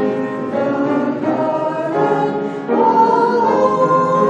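Three women singing a hymn together, holding long notes; the singing grows louder a little under three seconds in.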